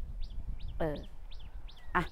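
A small bird calling over and over in short, high, falling chirps, several in quick runs, over a low rumble of wind on the microphone.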